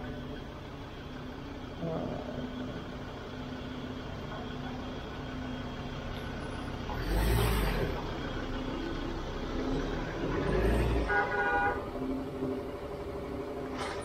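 Car service yard background: a steady low machine hum, a brief loud rush of noise about halfway through, and a short car horn toot near the end.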